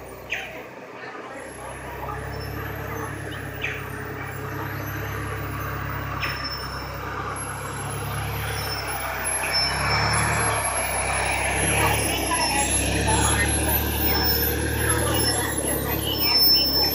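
Steady low hum of a motor vehicle running, growing louder over the second half, with faint voices in the background.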